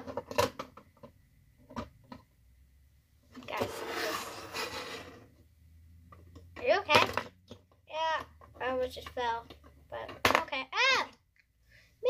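Plastic Lego pieces and minifigures clicking and tapping against a table, with a short rushing noise about four seconds in. In the second half a girl makes a string of wordless, rising-and-falling vocal sounds.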